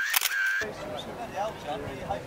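Digital camera beeping and its shutter clicking in the first half-second, two short beeps among several sharp clicks, followed by faint chatter of people.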